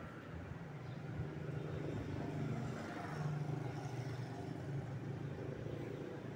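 A low, steady engine hum that grows a little louder about a second in and then holds.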